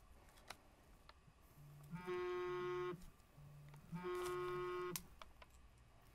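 Two identical electronic tones, each held about a second, one second apart, with a faint low pulsing tone beneath them.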